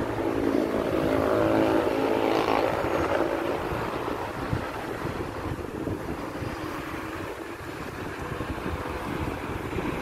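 A motor vehicle engine running with a steady hum that fades away about three seconds in. After that, wind buffets the microphone over a low outdoor rumble.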